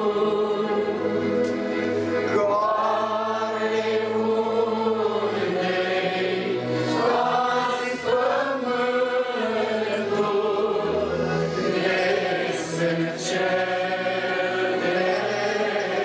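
A congregation singing a slow hymn together, holding long drawn-out notes.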